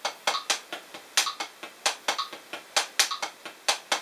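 Hickory 7A drumsticks playing a single stroke roll on a Drumeo P4 rubber practice pad: even alternating taps at about four a second, 16th notes at 65 bpm.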